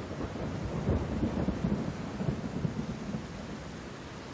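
Heavy rain falling steadily, with a low rumble of thunder that swells about a second in and dies away toward the end.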